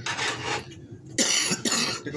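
A woman coughing: a short cough, then a longer, louder one about a second later.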